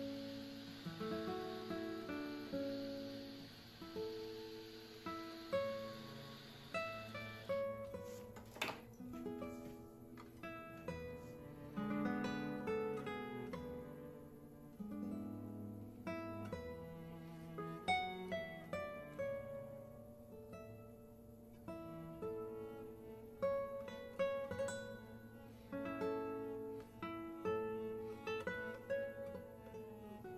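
Background music: a guitar playing a melody of plucked notes, each ringing and fading quickly.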